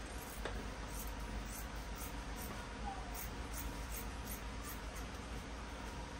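Scissors cutting through thin fabric on a table: a run of faint, quick snips over a low steady hum.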